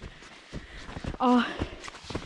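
Footsteps of boots walking through snow, a few soft steps.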